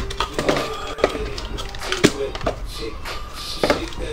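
Cardboard trading-card box being handled and set down on a table: several sharp taps and knocks, spaced irregularly about half a second to a second apart.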